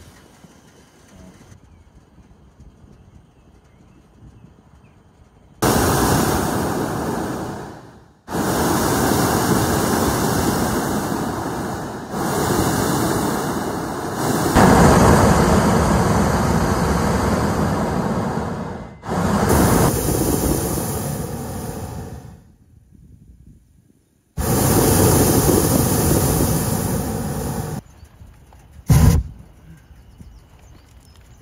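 Hot air balloon's propane burner firing in a series of loud blasts of two to six seconds each, starting about five seconds in with short breaks between them, and one brief blip near the end.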